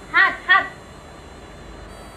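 A young puppy whimpering twice in quick succession, two short high calls.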